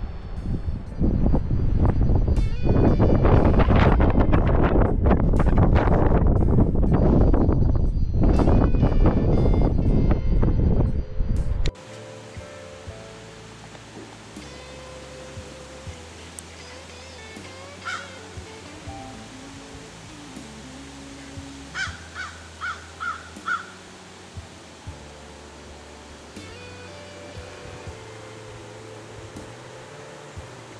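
Wind buffeting the microphone in gusts over ocean surf on the beach; it cuts off suddenly about twelve seconds in. Soft background music with low sustained notes follows, with a few short bird calls, a quick run of four about halfway through the rest.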